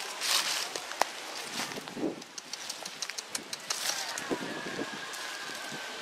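Sporadic crackling and rustling of dry leaves and twigs, with a sharp snap about a second in and a quick run of small clicks a little after halfway.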